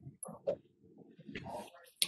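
A pet's faint, brief whimpers: a few short, scattered sounds.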